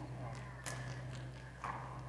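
A pause in speech: faint room tone with a low steady hum and a few faint, brief clicks and stirrings.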